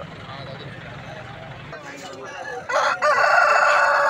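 A rooster crows: one long, loud call that starts about three seconds in and is still going at the end.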